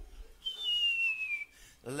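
A man whistling one steadily falling note, about a second long, as a sound effect for someone dropping off a cliff.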